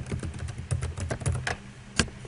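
Computer keyboard typing: a quick run of keystrokes over about a second and a half, then one louder click at the end.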